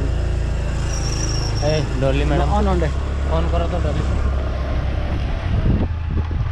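Motor scooter engine running steadily under a low rumble as the scooter is ridden along, with voices talking briefly in the middle.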